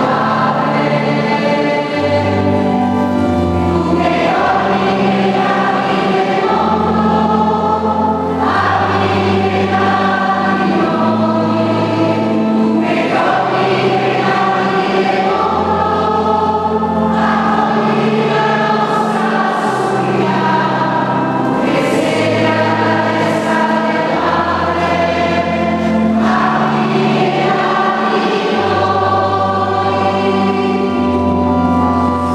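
Choir singing a sacred Mass chant in a reverberant church, with long held bass notes beneath the voices that change every second or two.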